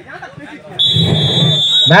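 A referee's whistle blown in one long steady blast of just over a second, starting a little under a second in, over crowd voices.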